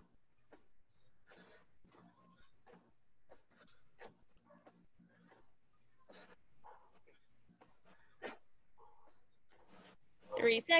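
Near silence, broken by faint, irregular short noises.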